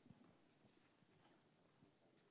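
Near silence in a large hall, with a few faint footsteps of people walking across the floor.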